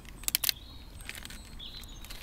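A quick cluster of sharp clicks and crinkles about a quarter of a second in, from the packaged powder-coated steel wheelie bars being handled. Faint bird chirps follow over steady outdoor background noise.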